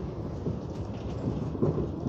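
Cabin noise of a 2017 Hyundai New Super Aerocity high-floor natural-gas city bus on the move: a low, uneven rumble of engine and road noise.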